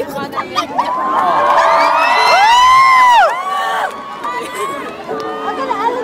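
Concert crowd cheering and screaming after a song ends, with many high-pitched screams rising and falling over one another. It is loudest around the middle, then dies down.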